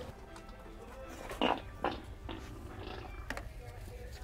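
Prank fart sound effect: a loud, rasping burst about a second and a half in, followed quickly by a second, shorter one.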